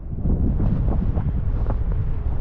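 Wind buffeting the microphone of a skier's camera during a run, a dense low rumble that gets louder shortly after the start. Short scrapes of skis over chopped-up, bumpy snow run through it.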